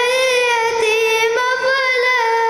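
A boy's voice chanting Quran recitation in melodic style into a microphone, drawing out long held notes that waver gently and step in pitch a few times.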